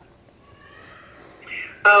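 A pause on a phone call: faint line hiss, a short breath, then a woman's voice on the phone starts to answer with "Uh" near the end.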